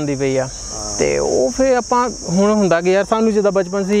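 Steady high-pitched drone of chirring insects, carried under men's voices talking.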